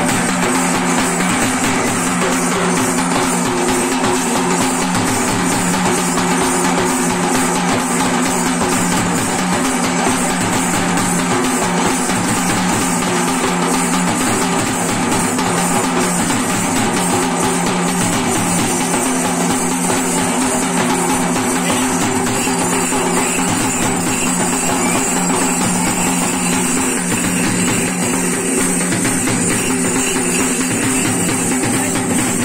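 Steady, unbroken drumming with sticks on a large stainless-steel barrel drum and a shallow steel drum, over a steady droning tone.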